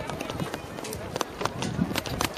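Indistinct voices mixed with irregular sharp clicks and knocks over a noisy background.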